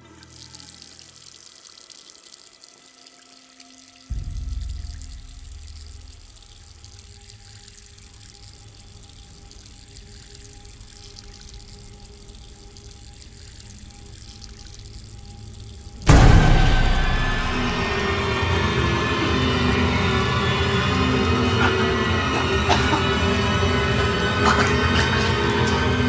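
Horror film score with a low drone and hiss, a deep boom about four seconds in, and a sudden loud hit about sixteen seconds in. After the hit, a loud, dense rushing of water sound effects runs under the music.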